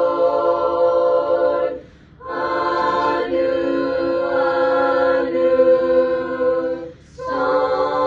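School choir of mostly female voices singing a cappella in held chords, with short breaks between phrases about two seconds in and again about seven seconds in.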